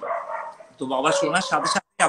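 Conversational speech over a video call: a voice in the first half second, then talking for about a second, breaking off just before the end.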